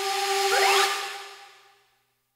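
Break in a K-pop karaoke instrumental: the beat drops out, leaving a hissing synth noise swell with a quick rising sweep and a held note, which fade to silence about one and a half seconds in.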